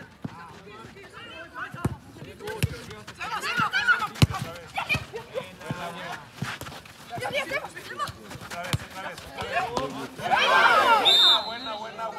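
Players and spectators shouting across a football pitch, with a few sharp thuds of the ball being kicked in the first half; the loudest shout rises near the end.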